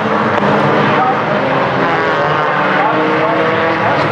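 Several four-cylinder stock car engines racing together at high revs, a loud, steady drone with engine pitches sliding up and down as the cars pass.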